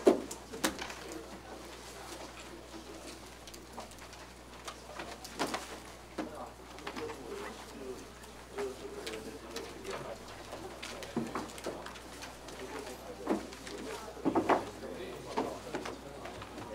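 Faint meeting-room noise: low murmuring voices in the background under scattered knocks and clicks, the loudest right at the start and a cluster near the end.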